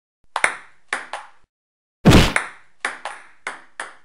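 Ping-pong ball ticking against paddles and table in a rally, three sharp clicks at first. About two seconds in comes a much louder, fuller crash, then a quicker run of about five more ticks.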